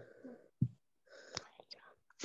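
Faint whispering and quiet voices over a video call, with a short click about one and a half seconds in.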